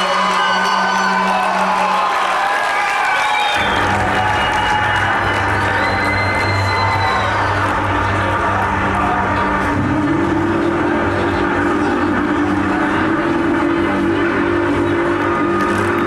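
Live metal concert in a hall: the crowd cheers and whoops while a low, sustained guitar and bass drone comes in about three and a half seconds in and holds.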